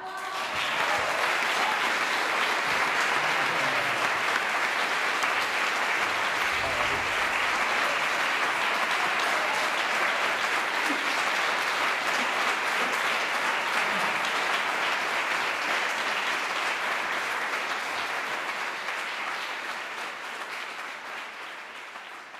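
Audience applauding steadily after the music stops, the clapping slowly dying away over the last few seconds.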